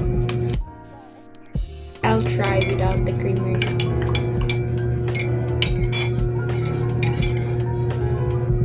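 A metal spoon clinking against a glass mug as coffee is stirred, in quick irregular taps, over steady background music. The music drops out briefly near the start.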